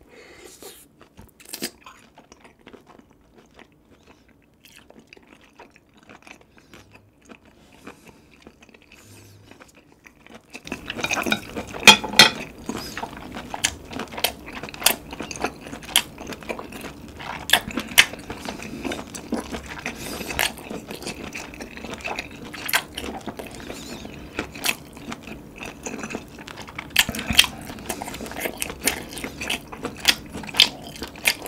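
Close-miked chewing of a whole cooked webfoot octopus: faint mouth sounds for about the first ten seconds, then much louder chewing with frequent sharp clicks to the end.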